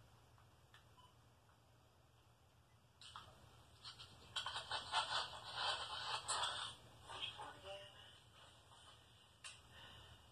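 Faint playback of a recording through a small device speaker, thin and muffled with a voice-like quality. It starts about three seconds in and dies away by about eight seconds.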